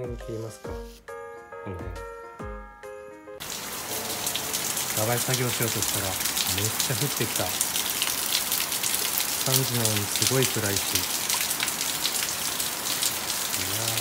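Rain falling on a wet concrete patio and shrubs: a loud steady hiss of dense patter that cuts in suddenly about three seconds in, after a short stretch of background music. A low voice sounds briefly over the rain three times.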